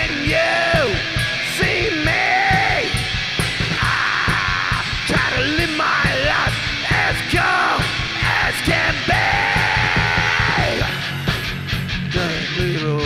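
Rock song: a sung vocal, pushed at times into shouting, over steady drums and guitar.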